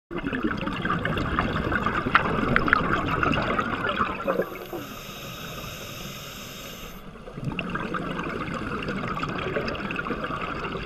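A scuba diver breathing through a regulator underwater. Loud gurgling, crackling bubbles of an exhalation come first, then a quieter hiss of inhalation through the regulator from about four to seven seconds in, then exhaled bubbles again.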